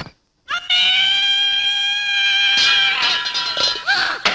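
A woman's long, high-pitched wailing cry, held almost on one note, begins about half a second in after a brief silence. A second cry overlaps it near the three-second mark.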